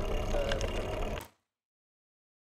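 Wind buffeting and road rumble on a bicycle-mounted GoPro while riding, with a few light clicks. The sound cuts off abruptly to dead silence just over a second in.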